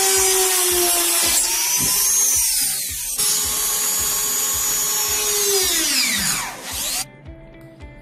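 Small handheld electric drill boring holes through a thin strip of bamboo: a loud, steady, high-pitched whine with a brief break about three seconds in. Near the end the motor spins down, its pitch falling steeply, and stops.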